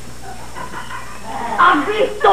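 A woman's exaggerated whining, whimpering cry with a sliding pitch, faint at first and louder in the last half second.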